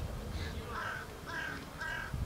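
A bird cawing three times: short harsh calls about half a second apart, over a low rumble.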